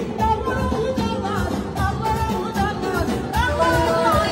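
A woman singing live into a microphone in an ornamented Azerbaijani style over an amplified band with electronic keyboard and a steady drum beat.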